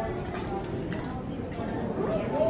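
Background chatter of visitors' voices echoing in an indoor hall, with a few faint clicks.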